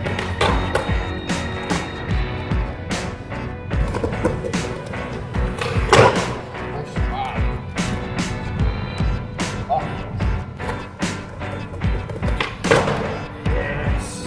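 Background music with a steady beat, over a skateboard rolling on stone paving and the clacks of its tail pops and landings during switch tricks, the loudest about six seconds in and another near the end.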